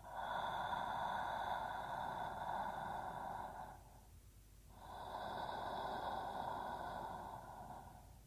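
A man's slow, calm breathing close to the microphone: two long breaths of about three and a half seconds each, with a short pause between them.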